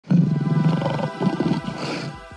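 A lion's roar sound effect over intro music. It starts abruptly and loud, a rough pulsing growl that tails off over about a second and a half, with a rushing hiss swelling near the end.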